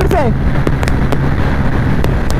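125 cc single-cylinder motorcycle engine held flat out at top speed in fifth gear, about 105 km/h, with a steady drone under heavy wind rushing over the microphone.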